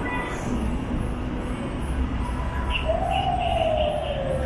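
Steady outdoor background noise with a low rumble. About three seconds in, a long single tone starts and slides slowly down in pitch.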